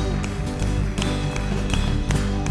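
Live church worship band playing an instrumental passage: sustained keyboard and guitar chords over electric bass, with scattered sharp percussive hits and no singing.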